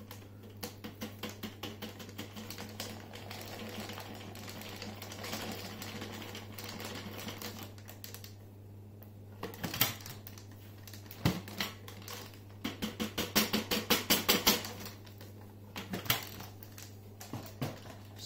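Dirt being tapped and shaken out of a Dyson upright vacuum's clear plastic dust bin onto a sheet of paper: rapid light clicks and rattles of the plastic bin with grit falling, including a quick run of taps about two-thirds of the way through, over a steady low hum.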